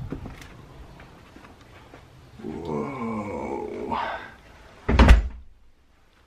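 A door shuts with a loud thud about five seconds in. Before it there is a brief low, wavering pitched sound, and soft handling noise.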